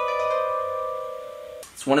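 Harp sound from a music-production software project, a few plucked notes ringing together and slowly fading, cut off about a second and a half in.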